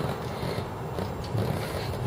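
Faint handling and scraping as a rubber spark plug cap is pushed onto a freshly fitted spark plug on a motorcycle's cylinder head.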